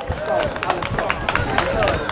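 Background voices with a quick, irregular run of sharp taps or claps.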